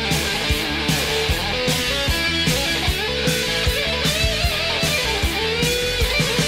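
Melodic 1980s hard rock playing, with no singing: an electric guitar plays a lead line with bending notes over steady drums and bass.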